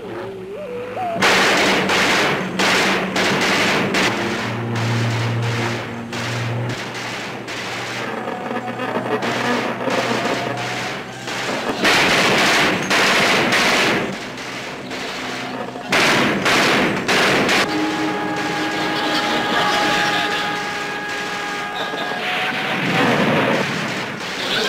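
Repeated bursts of machine-gun fire from a PT boat's deck guns shooting at a target plane, a television sound effect laid over the music score. The firing comes in several bursts, then gives way to held music notes in the last few seconds.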